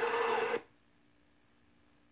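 Eerie soundtrack of a scary video clip: a noisy drone with a steady hum that cuts off suddenly about half a second in, leaving near silence with a faint low hum.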